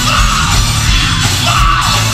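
Live gospel quartet band playing loudly, with a strong bass line and a lead singer shouting phrases over it.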